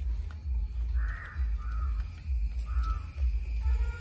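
Three short, harsh bird calls, the first about a second in and the others near the middle, over a steady low rumble.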